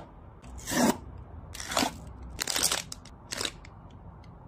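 A small cardboard blind box and its wrapping being torn open and crinkled by hand, in four short bursts of tearing and rustling, the strongest about a second in and near the three-quarter mark.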